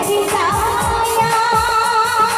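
A woman sings a Bhawaiya folk song into a microphone, holding one long note with vibrato from about half a second in, over live instrumental accompaniment with a steady beat.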